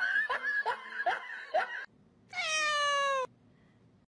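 A cat gives one loud, long meow of about a second, falling slightly in pitch, around halfway through. Before it comes a run of short rising cries, about two or three a second.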